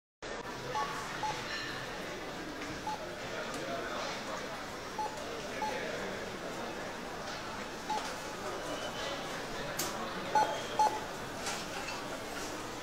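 Supermarket checkout barcode scanners beeping now and then, short single tones at irregular intervals, over a steady murmur of shoppers and store noise. The two loudest beeps come close together near the end.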